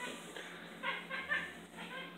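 A domestic cat giving a few short, faint cries in quick succession, about a second in, during a mounting scuffle with another cat.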